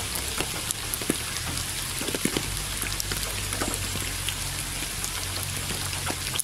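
Steady rain, with many separate drops hitting close by over an even hiss of rainfall, and a steady low rumble underneath.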